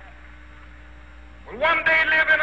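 A short lull in the song in which only a steady low hum is heard, then sung voices come back in on a held, wavering note about one and a half seconds in.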